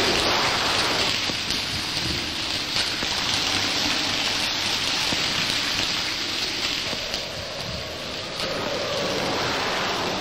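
A steady rushing noise like falling rain, with no voice or music over it.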